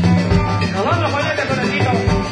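A live band playing Latin dance music, with a steady bass and drum beat under a lead melody.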